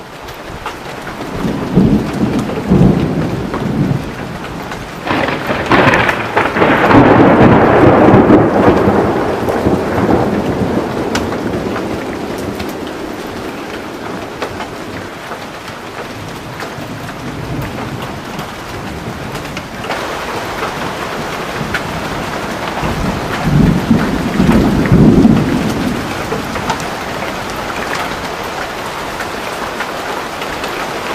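A thunderstorm: heavy rain falling steadily, with rolls of thunder. The thunder rumbles about two seconds in, swells into a long loud roll from about five to ten seconds in, and rolls again near the end.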